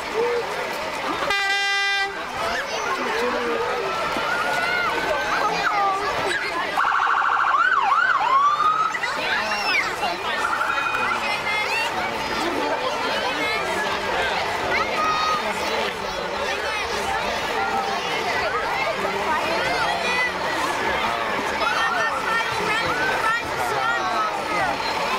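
Emergency vehicles' siren wails and horn blasts over spectators' chatter. There is a short horn toot about a second and a half in, and a louder burst with a gliding siren tone around the middle.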